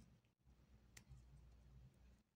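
Near silence: room tone with a faint low hum and a single faint click about a second in.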